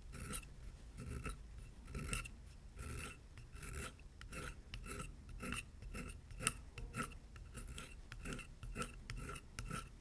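Hand skiving blade shaving curls off the back of vegetable-tanned leather on a granite slab: a run of short, dry scraping strokes, about one and a half a second. The leather is being thinned toward the fin edges, down to about the thickness of paper.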